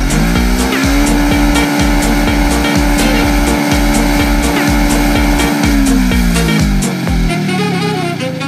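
Kawasaki KFX 700 quad's V-twin engine revving up within the first second, held at high revs for about five seconds, then falling away. Music with a steady beat plays underneath.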